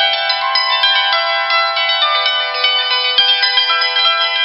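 Hammered dulcimer with its strings struck by a pair of hammers in a quick, unbroken stream of notes, each note ringing on under the next.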